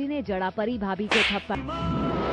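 A woman's dialogue is cut off about a second in by a loud, sharp slap sound effect, TV-drama style. A dramatic music sting of steady held notes follows.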